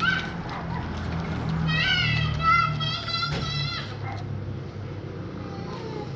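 A child's high-pitched squealing at play: a quick run of short shrieks starting about two seconds in, over a low steady hum.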